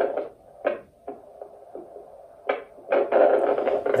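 Portable 8 MHz vascular Doppler (Edan SonoTrax) turned up to full volume, its speaker giving a steady low hum with short scratchy whooshes as the gelled probe is handled, then a longer, louder rush in the second half. The probe is not yet over an artery, so this is noise rather than a pulse.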